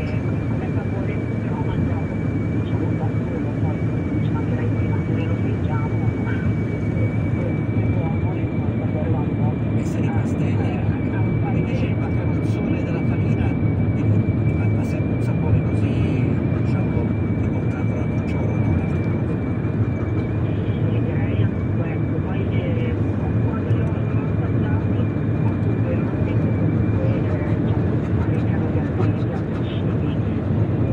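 Steady road and engine rumble of a moving vehicle, with a thin high whine held throughout.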